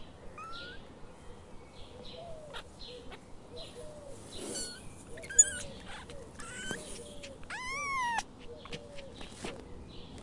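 Outdoor animal calls: many short chirps and upward-gliding whistles, a sharp click about five seconds in, and one louder drawn-out call that rises and then falls in pitch a little before the end.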